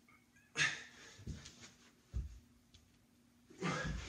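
A man breathing out hard with effort during resistance-band push-ups, two forceful breaths about half a second in and near the end. Between them come a couple of soft low thumps of hands landing on the carpeted floor.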